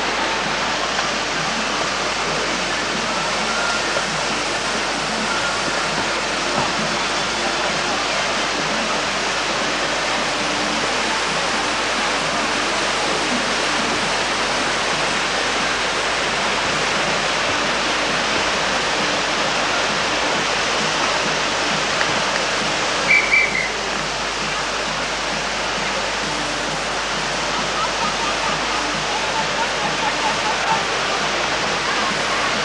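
Rushing whitewater of a slalom course, a steady, unbroken rush of water noise, with faint voices underneath. A brief high-pitched chirp cuts through about two-thirds of the way in.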